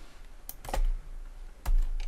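A few computer keyboard key presses, each a short click with a dull thump, the loudest near the end.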